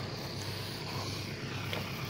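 A motor running steadily with a low hum under faint background noise.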